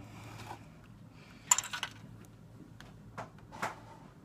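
Plastic model kit parts and their clear plastic bags being handled in the kit box: a short rustle about a second and a half in, then a few light clicks of plastic near the end.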